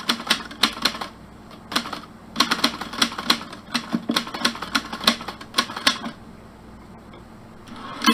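Manual typewriter keys clacking in quick runs of strikes, with two short pauses, as a typing sound effect.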